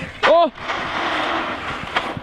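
A HoBao Hyper MT Sport Plus electric RC monster truck running on asphalt on a 4S pack: a steady rushing hiss that lasts about a second and a half, after a short vocal sound at the start.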